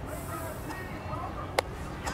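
Faint, distant shouting from players and spectators across an outdoor soccer field. A single sharp knock sounds about one and a half seconds in.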